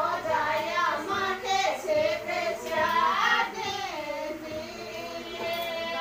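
A high voice singing a Shekhawati (Rajasthani) folk devotional song, a melody of held, gliding notes.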